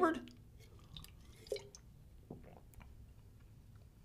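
Faint mouth sounds of someone tasting a sip of energy drink: a few soft smacks and clicks, about a second, a second and a half and two seconds in, over quiet room tone.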